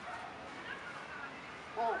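Faint, high animal calls in the background, short and scattered, with a brief voice sound near the end.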